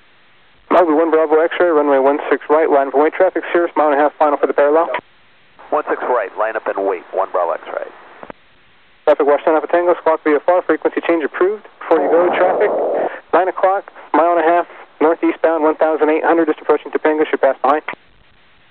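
Air traffic control radio: several back-to-back voice transmissions between tower and pilots over a narrow-band aviation radio channel. Each transmission cuts in and out abruptly, with a steady faint hiss in the short gaps between them.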